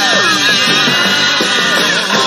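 Rock music with no singing: a guitar riff with a falling pitch slide near the start, a figure that repeats about every two and a half seconds.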